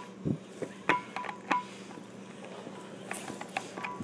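Metallic clinks and knocks of a hydraulic torque wrench head being handled and fitted onto a steel flange nut, several sharp clicks, a few of them ringing briefly, over a steady low hum.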